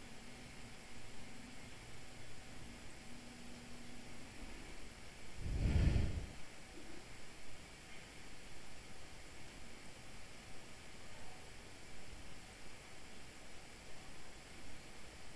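Faint steady hiss of room tone, broken once near the middle by a soft low whoosh that swells and fades within about a second.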